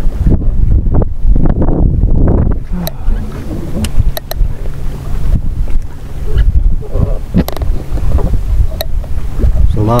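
Wind buffeting the microphone in a loud, uneven low rumble, with water lapping around a small boat and a few sharp clicks.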